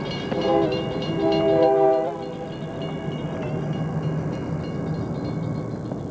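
Locomotive air horn sounding two chord blasts over the first two seconds, with a railroad crossing bell ringing behind it. After the horn stops, a steady low rumble continues.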